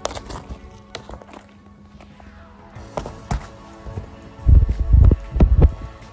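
Handling noise of a phone being picked up: scattered knocks and clicks, then heavy rumbling thumps on the microphone near the end. Faint background music runs underneath.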